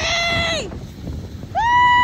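Children screaming while sliding down a snow-tubing hill on inner tubes: a long held cry dies away about half a second in, then a second long, level, high-pitched scream starts about a second and a half in.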